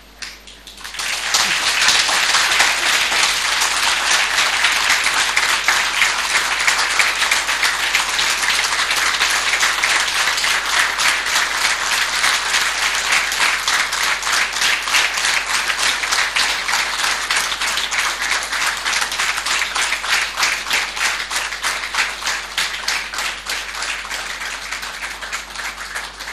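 Audience applauding: a dense, sustained round of clapping that starts about a second in and eases slightly near the end.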